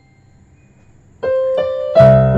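Yamaha arranger keyboard played with a piano voice: a short pause as earlier notes die away, then two single notes struck about a second in, half a second apart, and a full chord with bass entering right at the end.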